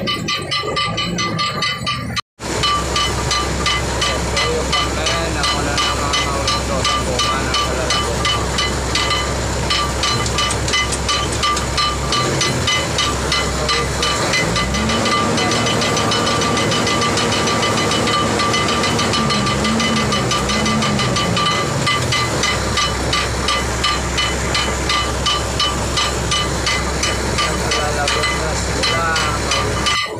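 Cargo ship's deck crane machinery running steadily, a loud hiss with a constant tone and fast, even pulsing. A low engine note rises about halfway through, wavers, and drops back again, as if the crane is working under load. The sound cuts out for an instant about two seconds in.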